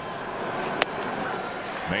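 Ballpark crowd murmuring steadily, with one sharp pop a little under a second in: the pitch smacking into the catcher's mitt for strike three.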